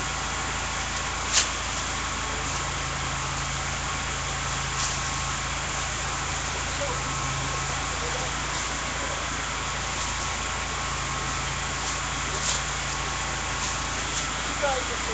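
Motor vehicle engine idling steadily, with a couple of brief clicks.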